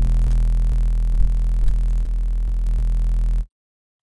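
A held, distorted synth bass note from the Vital synthesizer: basic-shape oscillators with a touch of white noise, driven through the filter's Dirty distortion mode. It gives a steady, saturated low tone with a hissy top and cuts off abruptly about three and a half seconds in.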